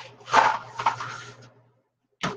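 A clear plastic bag being handled and crinkled at a kitchen counter, in two rustling bursts that die away about a second and a half in, over a faint low hum.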